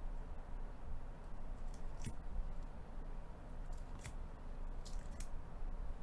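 Thick plastic magnetic card holders (one-touches) clicking and tapping as they are handled, a handful of sharp clicks about a second apart over a low background rumble.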